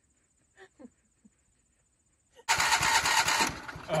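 An old Owatonna 310 skid-steer loader's engine starts up suddenly about two and a half seconds in and runs loudly. Before that there are only a few faint ticks.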